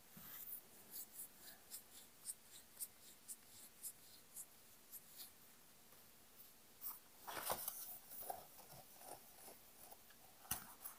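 Near silence broken by faint, short scratchy strokes about twice a second, with a louder rustle about seven and a half seconds in.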